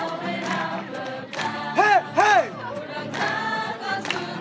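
A group of young people singing their team song together in unison, many voices at once. Two loud short calls, each rising then falling in pitch, cut through the singing in quick succession about halfway through.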